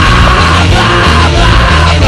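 Loud rock music with a shouted vocal.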